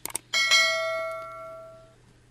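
Notification-bell sound effect of an animated YouTube subscribe button: two quick clicks, then a bright bell chime that rings out and fades away over about a second and a half.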